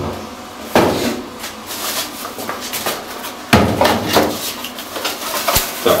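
Cardboard box and plastic bubble-wrap packaging being handled: three sudden knocks, with rustling and crinkling between them.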